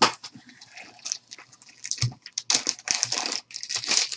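Hands tearing open and crumpling a shiny plastic trading-card pack wrapper: irregular crackling and crinkling, sparse at first and denser in the second half, with a single knock about halfway through.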